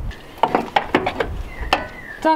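A handful of light metallic clinks and knocks, irregularly spaced, as an old Tein Super Street coilover strut is worked loose and dropped out of a car's front wheel well.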